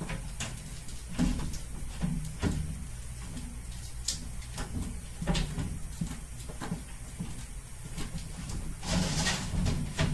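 Lid of a glass reptile terrarium being handled and slid: scattered knocks and clicks, with a longer scraping rustle near the end.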